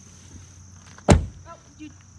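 Rear door of a 2008 Lexus LS 460 L shutting with a single thump about a second in, over a steady high drone of insects.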